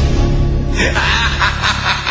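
Low, sustained dramatic music, then about three-quarters of a second in a person breaks into rapid, repeated laughter.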